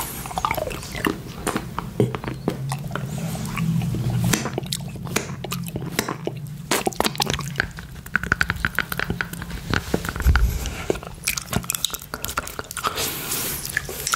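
Close-miked mouth sounds of a man licking, sucking and biting a hard rainbow candy cane: a dense run of wet clicks and taps of the hard candy against teeth and lips.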